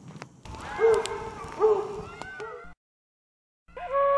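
Short pitched animal calls that rise and fall, two loud ones about a second apart and a weaker third, over scattered sharp clicks. They stop suddenly, and after a second of silence a held flute note begins near the end.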